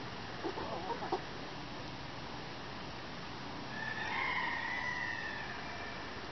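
Chickens calling: a few short clucks within the first second or so, then one long drawn-out call of nearly two seconds starting about four seconds in.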